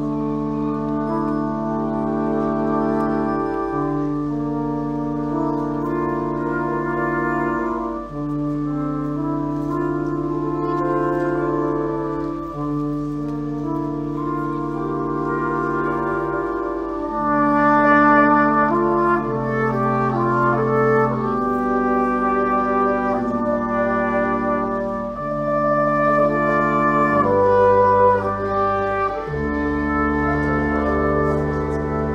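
Russian horn band playing: long straight brass horns, each sounding a single note, join into slow sustained chords that change every few seconds. A flugelhorn solo carries a melody above them, busier in the second half.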